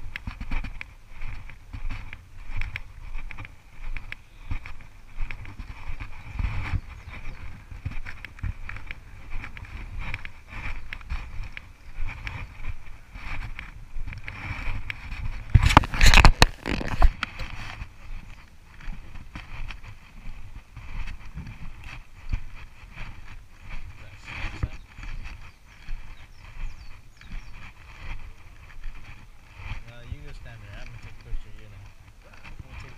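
Footsteps on a paved path at a steady walking pace, about two steps a second, with a faint steady high tone underneath. A short, loud burst of rustling noise comes about halfway through.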